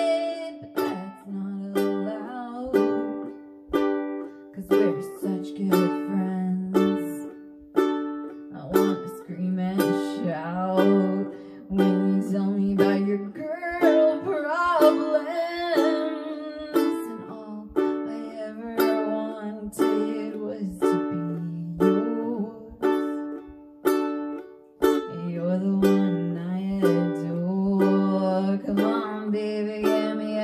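Ukulele strummed in a steady rhythm of about two strums a second through chord changes, with a woman singing over it, her voice clearest in the middle and near the end.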